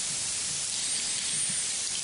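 Steady background hiss with no other sound standing out.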